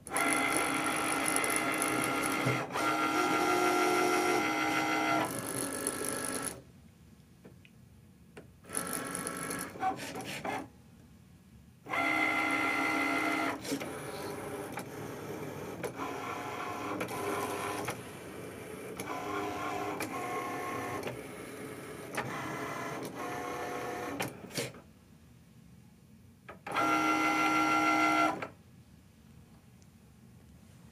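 Cricut Maker cutting machine's motors whirring in runs of steady pitched tones, broken by three short pauses, as it draws the cutting mat in, moves the cutting carriage and feeds the mat back out.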